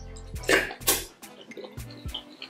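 Close-miked wet eating sounds as mouthfuls of fufu dipped in slimy ogbono soup go in by hand: two wet slurps about half a second and a second in, then faint mouth clicks.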